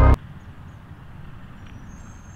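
A golf wedge striking a ball off a range mat: one sharp click right at the start, then a low, steady outdoor rumble.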